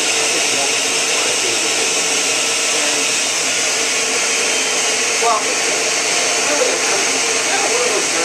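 Electric blender running at a steady speed, blending a fruit and flaxseed smoothie: a loud, even whirring with a steady hum. A voice is faintly heard over it in places.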